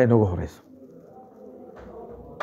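A man's voice speaking for about half a second, then a pause in which only faint, steady background sound remains.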